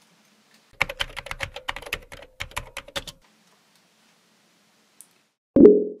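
Typing on a computer keyboard: a quick run of keystrokes lasting about two and a half seconds. Near the end a short, loud pitched blip sounds, a chat message notification.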